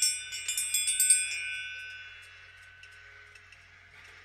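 A bell ringing: a quick flurry of high chiming strikes that stop about a second and a half in, then a ring that fades away over the next second. It is rung as a cue to sink deeper into trance.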